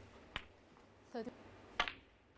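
A snooker cue tip striking the cue ball, which at once clicks into the black ball just in front of it: a quick run of sharp clicks near the end, the loudest sound here. A single sharp click comes about a third of a second in, and a brief voice just after a second.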